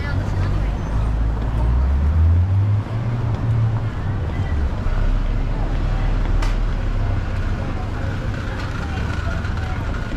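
Busy city street ambience: a low traffic rumble that swells for a couple of seconds early on, with chatter of passers-by and a few sharp clicks.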